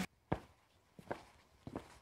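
A few faint, short thumps with quiet between them: one, then two close pairs.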